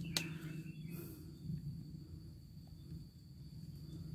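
Quiet outdoor background: a steady low rumble with a faint, thin high-pitched tone held throughout.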